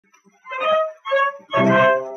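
Instrumental introduction of a vintage Italian song recording played by a small orchestra. After a near-silent start come two short notes, about half a second and a second in, and then a fuller chord held from about a second and a half in.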